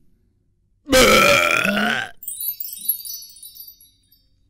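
A cartoon caveman's loud, drawn-out burp lasting about a second, starting about a second in. A faint twinkling chime sound effect follows.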